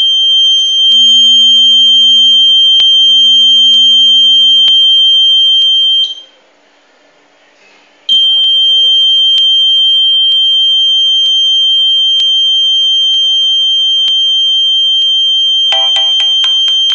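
Alarm buzzer on the security project board sounding a loud, continuous high-pitched tone for the intruder alert; it cuts off about six seconds in, stays quiet for about two seconds, then comes back on.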